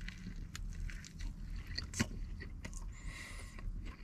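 A person chewing a big bite of a sauce-soaked double bacon cheeseburger: small wet mouth clicks and smacks over a low steady rumble, with a brief hiss about three seconds in.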